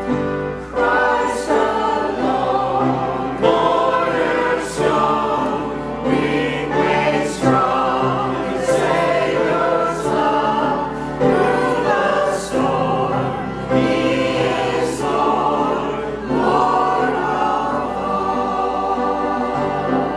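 Mixed church choir of men and women singing together in sustained phrases, with crisp sung "s" consonants.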